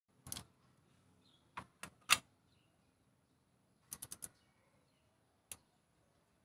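Sharp metal clicks as a torque wrench and spark plug socket are handled and fitted onto a spark plug in the engine: several single clicks, the loudest about two seconds in, and a quick run of four clicks about four seconds in.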